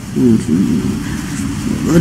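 A man's voice, low and muffled, murmuring softly; it starts a moment in.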